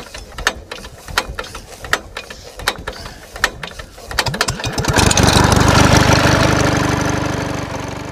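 Small car engine sound effect: irregular sputtering knocks as it tries to catch, then it starts and runs loudly with a steady note, fading out near the end.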